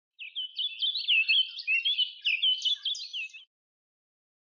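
A songbird singing a quick run of varied whistled notes that glide up and down, cut off abruptly about three and a half seconds in.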